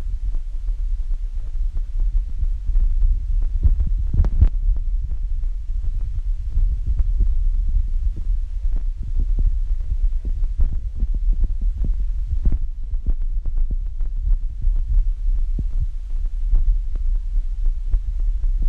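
Wind buffeting a phone's microphone outdoors: a loud, uneven low rumble with frequent knocks and pops, the strongest knock about four seconds in. It covers everything else.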